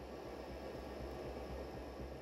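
Steady cabin noise of a small aircraft in flight: a low engine drone under an even hiss.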